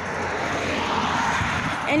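Road traffic noise: a steady rush of tyres on pavement that swells gently and then holds.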